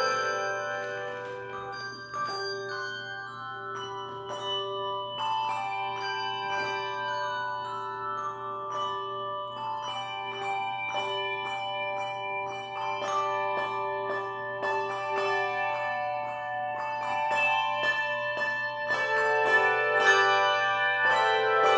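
Handbell choir playing: brass handbells struck one after another and left ringing, their long tones overlapping into chords, with a lower bell sounding again and again under the melody.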